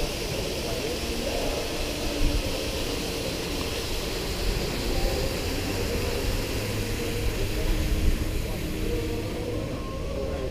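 Open-air plaza ambience: indistinct distant chatter of passers-by over a steady low rumble.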